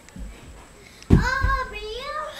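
A child singing a drawn-out, wavering note that starts abruptly about a second in, with a low thump at its start.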